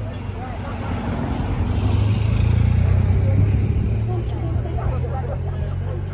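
Race convoy vehicles, a motorcycle outrider and a support car, driving past on a wet road: engine and tyre noise swells to a peak two to three seconds in, then fades as they pull away. Spectators chatter.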